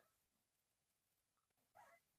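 Near silence: room tone, with one faint brief sound near the end.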